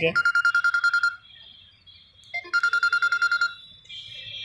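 A phone ringing with a trilling electronic ring: two rings of rapid, evenly pulsed beeps, each about a second long and about a second and a half apart.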